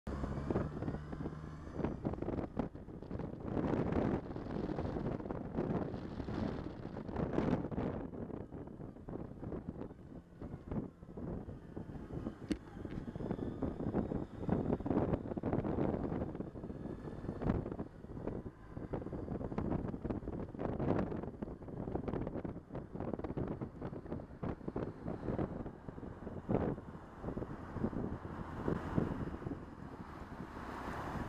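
Wind buffeting the microphone on a moving Suzuki Burgman maxi-scooter, surging and easing every second or two, over the scooter's engine and road noise. A steady low engine note is plainest in the first couple of seconds.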